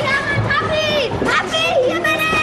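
Several children's high voices shouting and calling out over one another.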